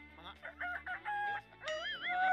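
A rooster crowing, in wavering, gliding calls with a short steady hold, over background music.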